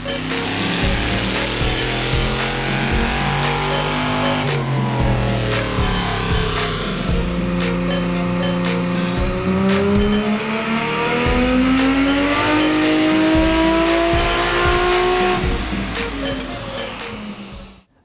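Car engine revving hard, its pitch climbing, then dropping sharply about four and a half seconds in before climbing steadily again for about ten seconds. It fades out near the end.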